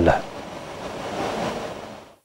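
A steady hiss of background noise, with no rhythm or pitch, that fades out near the end.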